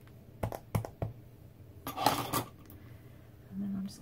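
A few sharp clicks of a clear acrylic stamp block and rubber stamp being handled on a desk, then a brief scuffing rustle about two seconds in.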